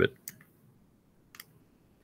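A few faint, short clicks of keys being pressed: a couple just after the start and one more about a second and a half in.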